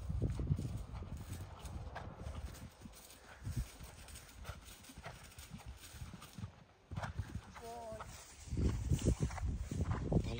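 A horse's hoofbeats on grass as it canters round the field, loudest near the start and fading as it moves away through the middle. Loud rumbling handling noise on the microphone from about eight and a half seconds.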